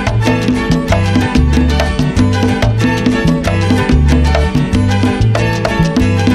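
Salsa band recording in an instrumental passage with no vocals: a low repeating bass figure under steady, evenly spaced percussion and sustained instrumental lines, a continuous driving beat.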